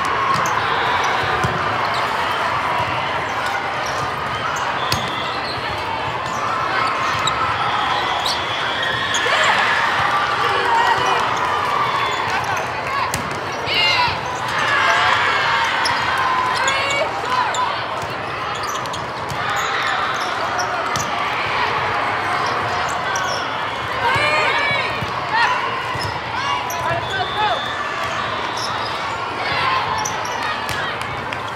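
Volleyball play in a large echoing hall: repeated sharp ball contacts and bounces on the court, with players and spectators calling out over a steady background hubbub.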